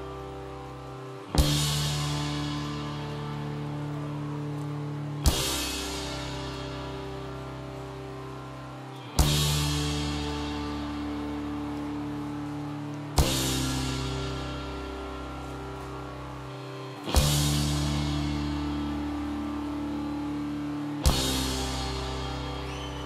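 Indie rock band playing live: slow, sustained chords with a crash cymbal and bass drum struck together about every four seconds, each crash ringing out and fading before the next. No vocals.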